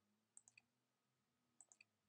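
Near silence with two faint clusters of quick clicks, one about half a second in and one near the end, as service buttons are selected in point-of-sale software.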